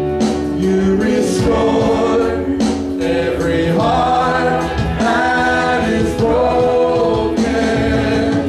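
A choir singing a slow gospel worship song, holding long notes over a steady instrumental accompaniment.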